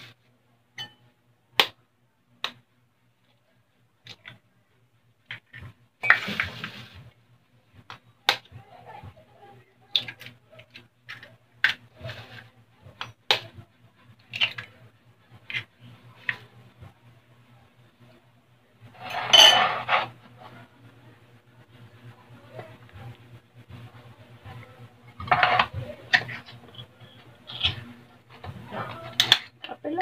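Eggs tapped and cracked on the rim of a glass bowl and a fork knocking against the glass: a scattered series of sharp clicks and knocks. A few louder, longer noisy bursts come in between, about a quarter of the way in, again around two-thirds of the way through, and near the end.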